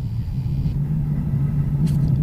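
A steady low hum over a rumble, unchanging throughout.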